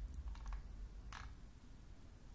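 Faint clicking of a computer mouse: a quick cluster of clicks about half a second in and one sharper click just after a second, over a low steady hum.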